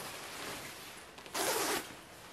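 Rustling of a black nylon snowsuit being pulled out and handled, with one short, louder rasp of fabric or zipper about one and a half seconds in.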